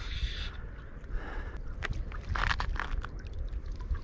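Wind rumbling on the microphone, with light water splashing and sloshing from a hooked fish being played and brought to a landing net in shallow water, with scattered crackles around the middle.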